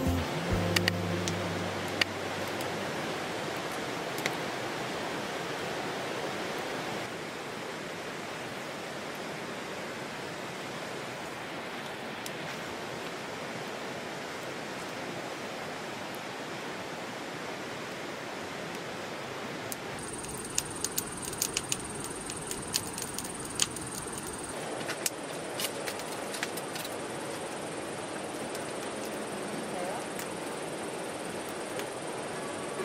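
Steady rushing of a mountain stream flowing over rocks. About two-thirds of the way through, a thin, high insect buzz joins it, along with a run of small clicks.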